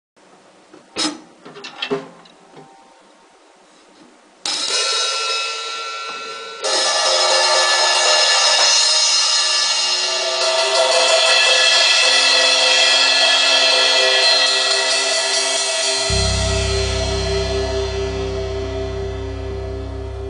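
Drum kit cymbals at the start of a band's song: a few light hits, then two crashes about two seconds apart that ring on and slowly fade. Near the end a low held note and a pulsing higher pattern come in beneath the fading cymbals.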